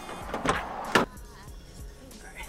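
Pickup truck's driver door opening and shutting: two sharp knocks about half a second apart, the second one the louder, with background music underneath.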